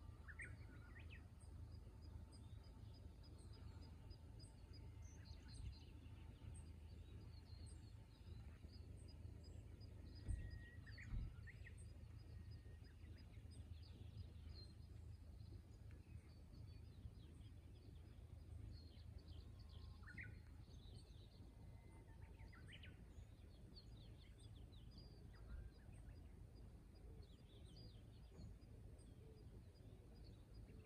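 Near-quiet outdoor ambience: faint, scattered bird calls and chirps over a low wind rumble. Two soft low knocks come about ten and eleven seconds in.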